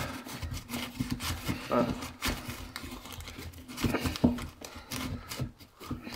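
Wooden block being worked by hand into a cut-out in a plasterboard wall: scattered light knocks and rubbing of wood against plasterboard.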